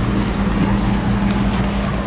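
Steady rushing background noise with a constant low hum, such as a fan or air conditioner running in the room.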